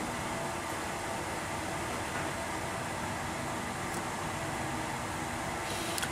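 Steady background room noise: an even hiss with no distinct events.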